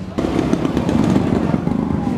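A motorcycle engine running close by, coming in suddenly just after the start and holding steady with a rough, dense sound.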